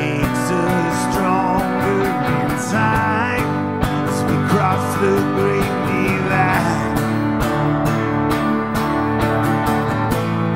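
Live instrumental passage of an acoustic folk song: a steel-string acoustic guitar strummed steadily while an electric guitar plays lead lines with bent, sliding notes.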